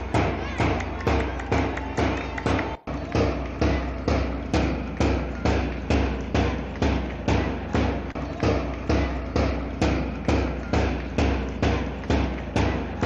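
A drum beaten in a steady, even rhythm, about two and a half hard beats a second, with a heavy low thump on each beat. The beat breaks off for an instant about three seconds in.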